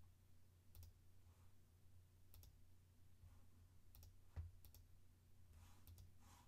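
Faint computer mouse clicks, about six spread irregularly over a few seconds, over a low steady hum.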